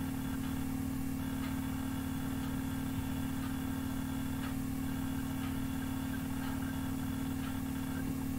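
Steady low electrical hum of background room noise, with a faint tick about once a second.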